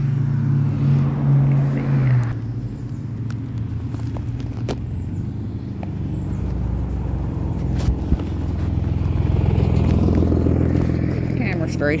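Low wind rumble on a phone's microphone while cycling, mixed with a car engine running close by; the rumble eases after about two seconds and builds again in the second half.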